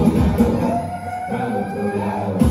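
DJ dance music over the party sound system. About half a second in the beat drops out, and a single siren-like tone slowly rises in pitch through the break.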